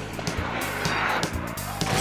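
Upbeat cartoon music with a steady beat and bass line. Over it, the wheels of roller skates roll across a stage floor, a rushing rumble that swells about a second in.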